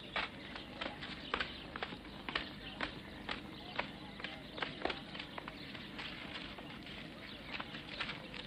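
Light, irregular footsteps, about two a second, thinning out after about five seconds, over the steady hiss of an old film soundtrack.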